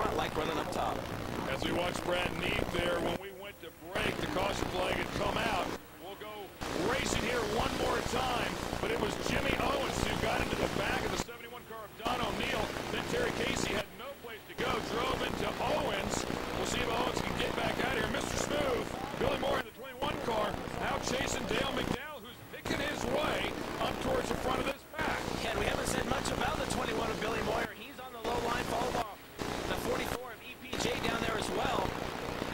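Dirt late model race cars' V8 engines running hard in a pack on a dirt oval. The sound drops out briefly every few seconds.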